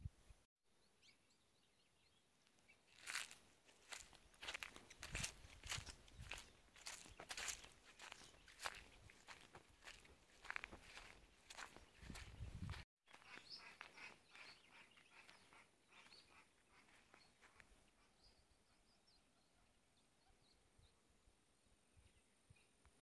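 Footsteps on dry ground and twigs, about two steps a second, each with a crunch. They start about three seconds in and stop abruptly about two-thirds of the way through.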